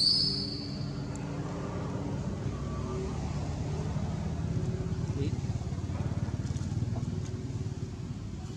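A motor vehicle's engine running, a low pulsing rumble that swells a little and eases off near the end, with a brief high-pitched squeal right at the start.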